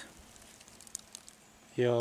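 Faint, quiet woodland background with a few soft clicks about a second in; a man's voice begins near the end.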